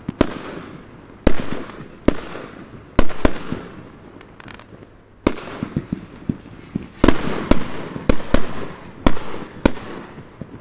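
Aerial fireworks bursting: about a dozen sharp bangs at irregular intervals, each trailing off in a fading echo, with a lull in the middle and a quicker run of bangs in the second half.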